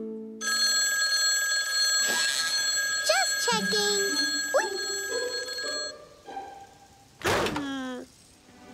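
A telephone bell ringing continuously for about five seconds, then stopping, with brief cartoon voice sounds over it partway through. A short, loud noisy burst near the end.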